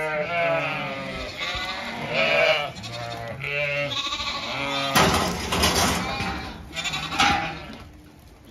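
Zwartbles ewes and lambs bleating over and over, several calls overlapping, some high and some deep. A louder burst of noise breaks in about five seconds in.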